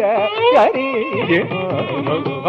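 Live Carnatic classical music: a male voice singing with sliding, ornamented pitch (gamakas), shadowed by violin, with mridangam strokes struck about half a second and one and a third seconds in.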